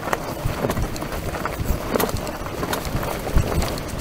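Fat tyres of a full-suspension electric recumbent trike rolling fast downhill over a rocky gravel trail, with an irregular run of knocks and rattles as it bounces over the rocks. The tyres are pumped fairly hard, especially the front, which makes the ride bouncy.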